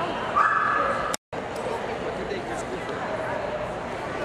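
A Nova Scotia Duck Tolling Retriever gives one short high-pitched squeal, under a second long, over the steady murmur of a crowded show hall. The audio drops out for an instant just after.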